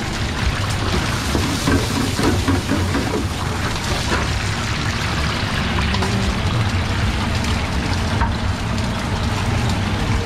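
Hot oil sizzling steadily in a food-truck deep fryer with food frying in the baskets, over a low steady hum.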